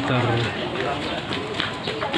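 A man's voice speaking, opening on a drawn-out held syllable, then further speech-like sounds.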